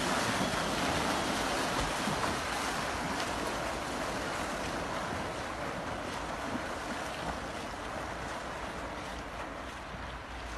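Remote-controlled rescue buoy racing off across the water towing a person: a steady rush of churned water and spray that slowly fades as it pulls away.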